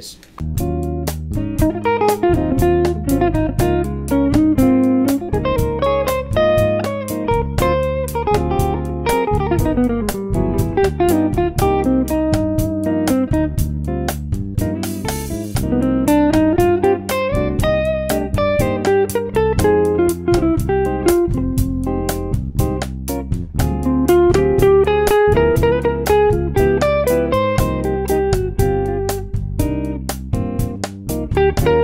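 Jazz guitar solo on a hollow-body archtop electric guitar: single-note melodic phrases played over a slow bossa nova backing track with bass and an even percussion pulse.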